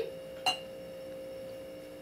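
Steady high-pitched hum on one tone, with a single faint click about half a second in.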